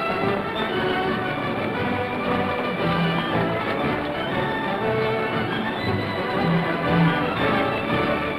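Orchestral film score playing held, layered notes at a steady level.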